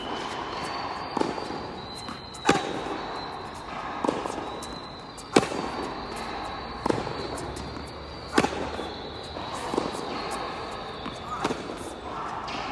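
Tennis ball struck by a racket during a hard-court rally: sharp pops about every three seconds, with quieter knocks of the ball between them.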